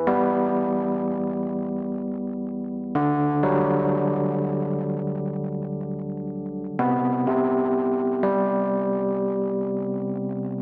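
Background music: sustained keyboard-like chords that change about every three to four seconds, each starting loud and slowly fading, with a fast pulsing in the upper notes.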